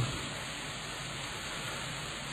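Steady hiss of the recording's background noise, even and unbroken, with no other sound.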